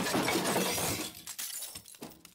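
Glass shattering: the tail of the crash, with scattered shards tinkling and clicking as it fades away.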